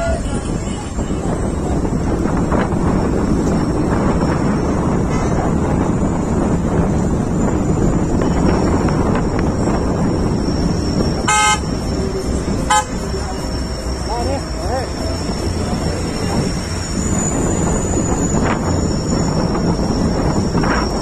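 Engine and road noise of a moving vehicle, heard from on board, with two short horn toots a little past the middle.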